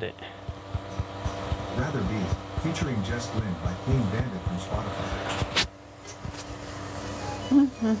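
A smart speaker's voice assistant answering a spoken request to play a song, its synthetic voice faint over a steady hum. There is one sharp click about five and a half seconds in, and a man's laugh right at the end.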